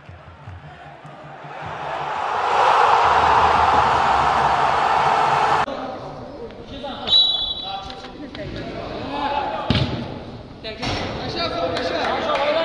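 Football kicked and bouncing on an artificial-turf pitch, a couple of sharp knocks in the second half among players' shouts. Before them, a rising rushing swell that cuts off suddenly about halfway.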